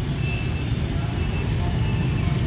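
Steady low rumble of nearby road traffic, with a few faint short high beeps now and then.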